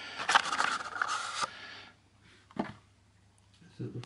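Cardboard card-deck box being worked open by hand: a rustling scrape of card against card for about a second and a half, then a single sharp click.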